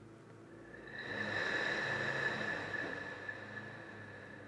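A person breathing out long and audibly during a stretching exercise. The breath swells about a second in and fades away over the next two seconds.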